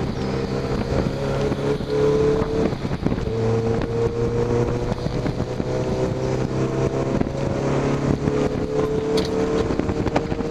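Mazda MX-5's four-cylinder engine heard from inside the open cockpit at track pace, the revs climbing steadily in long pulls with an upshift about three seconds in and another near eight seconds.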